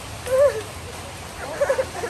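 Steady rain hiss with two short wavering cries over it: one that bends down in pitch about half a second in, and a shorter quavering one near the end.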